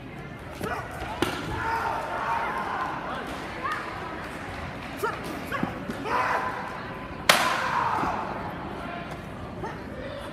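Sharp slaps of padded sparring gloves and foot pads landing on protective gear, a few scattered hits with the loudest about seven seconds in, over voices and chatter in a large hall.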